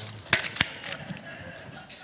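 Two sharp knocks about a quarter second apart, followed by a few fainter taps.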